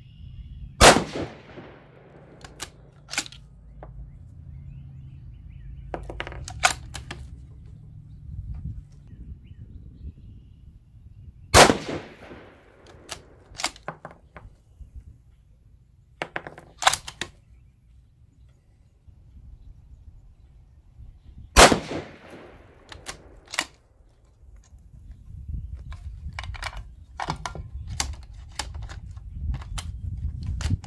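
Three rifle shots from a Savage 110 Switchback bolt-action rifle in 6mm ARC, about ten seconds apart, each with a short echoing tail. Lighter metallic clicks of the rifle and its cartridges being handled come between the shots, and a run of them comes near the end.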